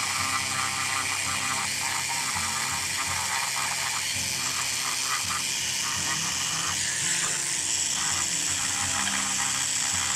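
Handheld rotary carving tool running steadily with a pointed burr grinding into the wood of a carved fish, a high motor whine with an uneven rasp as the burr bites.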